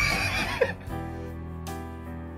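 A brief high-pitched laugh in the first second, over background music. The music then carries on alone with held chords.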